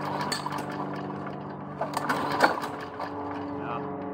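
Small gasoline push-mower engine running steadily at idle, with a few sharp clicks and knocks over it.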